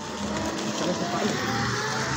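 A small motorised three-wheeled cart running with a steady hum.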